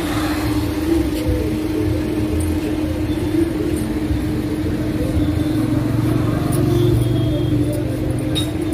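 A motor-vehicle engine running steadily, a constant hum over a pulsing low rumble.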